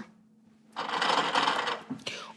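Mechanical running noise from a prop lie-detector machine. It starts about three-quarters of a second in, after a moment of near silence, and holds steady.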